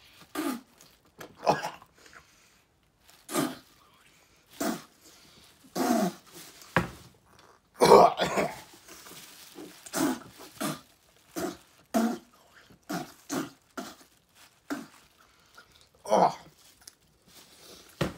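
A man gagging, coughing and dry-heaving into a plastic bag, about twenty short bursts, the loudest around eight seconds in. It is his gag reflex against the dry bird seed he has been eating: he almost throws up but does not.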